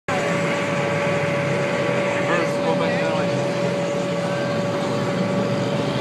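Steady machine hum holding one constant tone, over a background of crowd voices.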